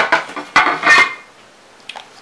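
Clear plastic lid of a Ferrero Rocher box, used as a stay-wet palette, coming off with a sharp snap, followed by about a second of hard plastic clattering as it is handled and set down.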